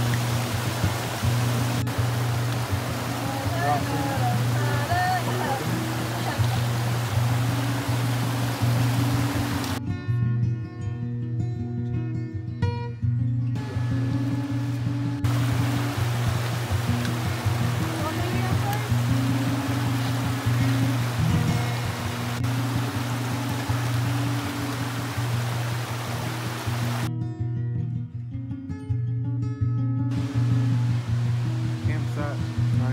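Background music with a repeating low bass line over the steady rush of a fast mountain creek. The creek sound cuts out twice, about a third of the way in and near the end, leaving only the music.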